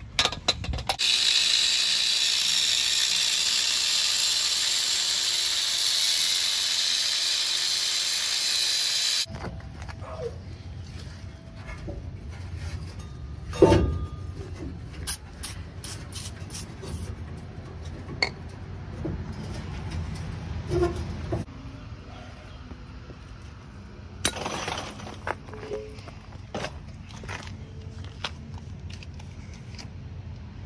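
Aerosol penetrating spray hissing steadily for about nine seconds onto a rusted exhaust hanger. Then come the quieter clicks, knocks and scrapes of hand tools working the muffler loose, with one loud knock and a second short spray burst.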